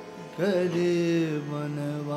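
Raag kirtan music in Raag Tukhari: a steady harmonium drone, with a held melodic phrase entering about half a second in on a quick upward slide.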